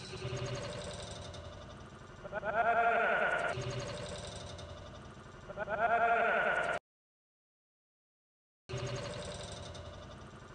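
Slowed-down replay audio: a drawn-out, wavering, voice-like sound that swells and plays twice back to back, then cuts off suddenly. After about two seconds of silence it starts again near the end.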